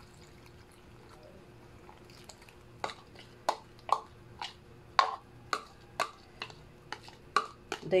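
Metal spoon scraping thick yeast mixture out of a plastic measuring cup into a glass bowl of flour. From about three seconds in it clicks against the cup and bowl, roughly twice a second.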